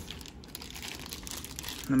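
Clear plastic wrapping crinkling as a bagged vacuum extension wand is handled, an irregular crackle.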